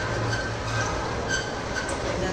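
Large corrugated metal roll-up shutter rumbling and rattling steadily as it starts to rise, with a low hum and a faint squeal.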